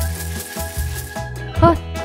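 Background music with held tones over a steady low bass, and a short rising voice sound near the end.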